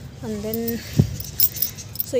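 A woman's voice briefly, then a single thump about a second in followed by a few light clinks, the handling noise of picking spinach stems by hand.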